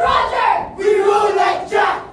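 A group of speech-choir performers yelling and screaming together, without words, in two loud outbursts, the second starting just before a second in.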